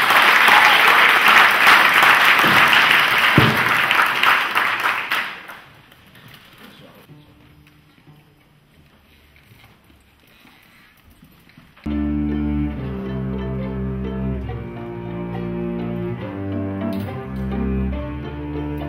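Audience applause for about five seconds, then a lull, then a string orchestra starts playing about twelve seconds in, with sustained chords that shift every second or so.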